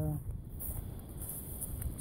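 A man's short hesitant "uh", then faint, steady low outdoor background noise with no distinct sound events.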